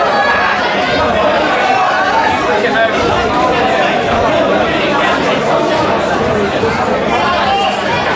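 Ringside crowd of boxing spectators chattering and calling out, many voices overlapping at a steady level in a reverberant hall.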